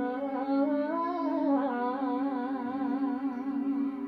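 A woman singing a wordless, ornamented doina line over a steady held accompaniment note: the voice rises about a second in, then falls and wavers in a wide vibrato.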